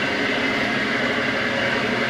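Commercial meat mixer-grinder running steadily as it grinds beef into ground beef: an even mechanical whir with a faint high whine.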